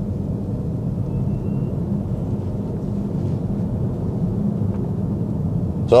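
Tyre and road noise inside the cabin of a Cupra Born electric car at road speed: a steady low howling drone from its Nokian Hakkapeliitta R3 winter tyres, the tyre noise these tyres are known for.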